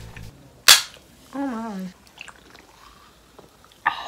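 An aluminium soda can of carbonated lemon-lime soda cracked open with one sharp pop of the pull tab, a little under a second in.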